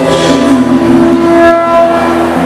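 Live band music: a long held note sounds over nylon-string acoustic guitar, with no break in the music.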